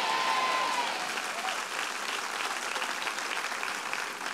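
Congregation applauding in a large hall, loudest in the first second and then settling to a steady level.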